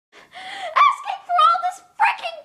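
A boy's high-pitched, strained voice forced through clenched teeth in two short outbursts, too garbled to come out as words.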